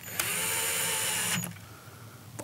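Cordless drill-driver driving a screw into a steel door hinge. It runs for just over a second, spinning up at the start, then holds steady and stops.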